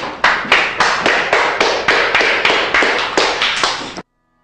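A small group of people applauding, with claps coming about four times a second. The applause cuts off suddenly at the end.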